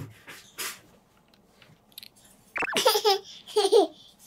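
Toddler laughing: a couple of short breathy giggles, then two louder bouts of laughter in the second half.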